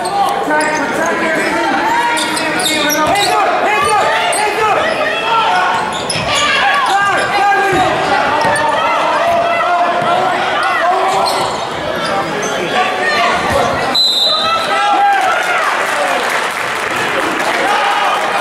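A basketball being dribbled on a hardwood gym floor amid the overlapping chatter and shouts of players and spectators, echoing in a large gym.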